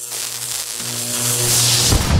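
Music-style transition effect: a swell of hiss that grows louder and brighter over a steady low tone, with a deep hit near the end.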